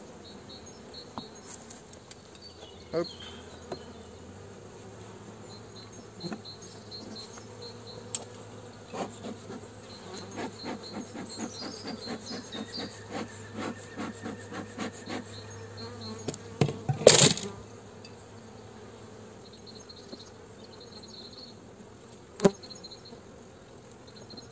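Honeybees humming steadily from an open hive colony, with scattered clicks and knocks of the frame grip and hive tool on the wooden frames. About seventeen seconds in there is one short, loud noise, the loudest thing heard.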